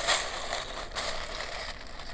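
Hand rummaging through a pile of loose plastic building-brick parts: a dense, continuous clatter and rustle that starts suddenly.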